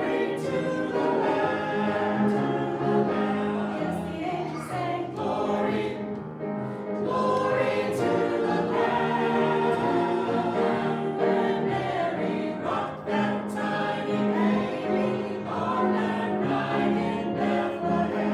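Mixed church choir of men and women singing together, several voices holding and moving chords.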